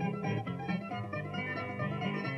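Punto guajiro instrumental passage on plucked strings, guitar and laúd, playing a steady run of notes over a moving bass line between the sung improvised décimas.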